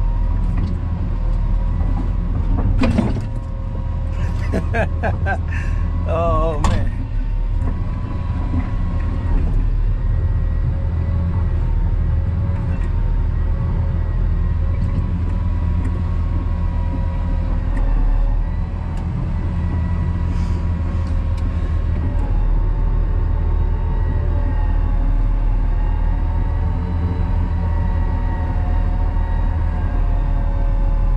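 Caterpillar D6 crawler dozer heard from inside its cab: the diesel engine runs steadily with a deep hum and a steady high whine as the dozer is driven and turned. A few clicks and a short warbling sound come about three to seven seconds in.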